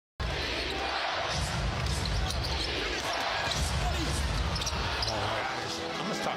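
Basketball game audio: a ball being dribbled on a hardwood court over the steady noise of an arena crowd, with a commentator's voice underneath.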